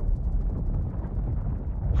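A deep, steady rumble with little above it, the kind of low drone used as film sound design.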